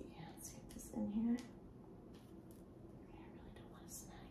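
A woman's low, near-whispered voice, with a short hummed sound about a second in. Faint brief rustles come in between as a nylon stocking's top is fastened into a metal garter clasp.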